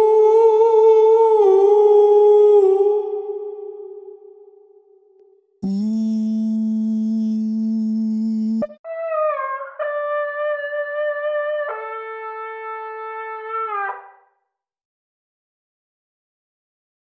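Wordless sung vowel notes from the Bloom Vocal Aether virtual vocal instrument, played through the Pulsar Audio Primavera spring reverb plugin. A long held note ends in a reverb tail that fades out over a couple of seconds. Then a lower held note cuts off sharply, and a short run of stepped notes follows, falling silent about two seconds before the end.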